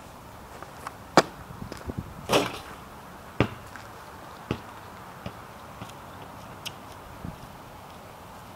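A basketball after a shot: a sharp strike about a second in, then the ball bouncing on pavement, the bounces getting fainter and coming closer together as it settles.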